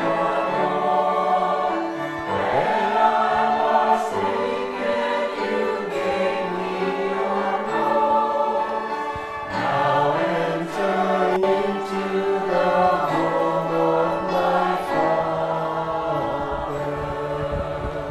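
A choir singing a slow song in long held notes.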